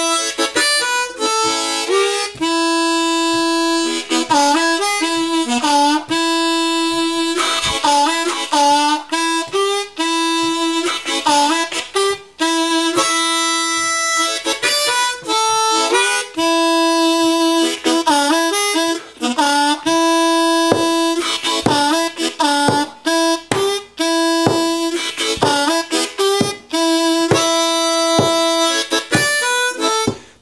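Solo diatonic blues harmonica playing a lick in short phrases. It is built on bent two-hole draw notes and the 'blue third' three-hole draw, and the notes often dip and scoop in pitch from bending.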